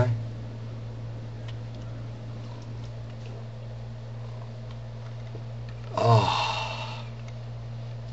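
A man drinking ice water from a glass, then, about six seconds in, a breathy 'ahh' exhale of about a second after swallowing. A steady low electrical hum runs underneath.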